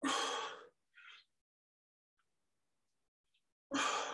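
A man's forceful breath out as he presses a kettlebell overhead in a squat-to-press, followed by a shorter, softer breath; the pattern comes again with the next rep near the end.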